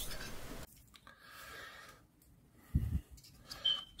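Printed PETG parts being rubbed and scraped off a glass build plate, stopping abruptly under a second in. Then low room tone with one short low thump near three seconds in.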